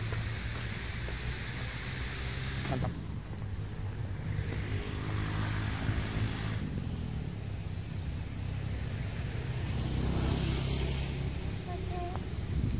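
Steady low hum of motor traffic, with a hiss that swells and fades a few times as vehicles go by.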